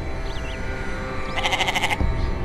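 A goat bleating once, a short quavering bleat about a second and a half in.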